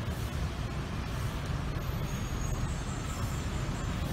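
Steady low rumble of city road traffic mixed with wind buffeting the microphone.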